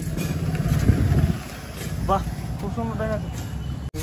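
A loud low rumbling noise for about the first second and a half, then faint distant voices over a steady low hum.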